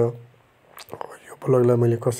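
Speech: a voice narrating, with a short pause in the first second before talking resumes about halfway through.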